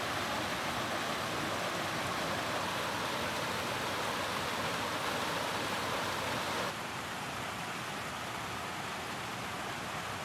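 Mountain creek rushing over rocks in small cascades, a steady rush of water. About two-thirds of the way through it drops suddenly to a quieter level.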